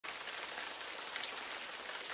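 Steady rain falling, an even hiss with scattered ticks of drops, used as the intro of a song.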